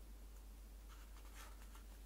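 Faint rustling of a book's paper pages being handled and leafed through, a few soft rustles in the second half.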